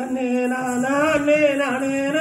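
Singing of a Valli Kummi folk song: a chant-like melody on long held notes, starting right after a brief break.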